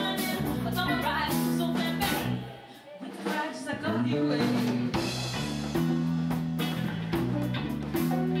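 Live band: a woman singing into a microphone over electric guitar and drums. The music drops away briefly about two and a half seconds in, then comes back.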